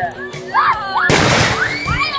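A firework going off about a second in: a loud burst of noise lasting just under a second. Voices cry out in rising and falling exclamations before and after it.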